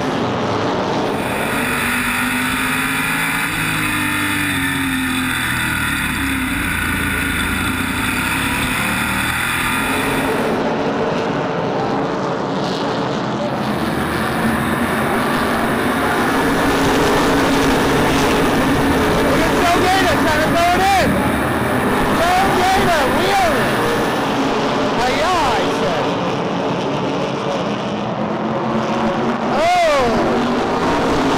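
SK Modified race cars' V8 engines running at racing speed on a short oval, heard both from the track side and close up through an in-car camera. The engine note is steady for long stretches, and its pitch rises and falls several times in the second half as the cars work through the corners.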